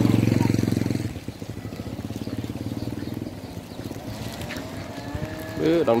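A motorbike engine passing close by: loudest in the first second as the bike goes past, then fading as it rides away.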